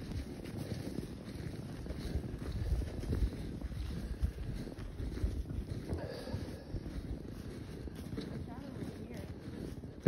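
Footsteps crunching through snow, with wind noise on the microphone.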